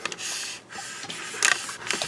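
Scraping handling noise, then a couple of sharp knocks about a second and a half in, as a glass tarantula enclosure is shifted and lowered.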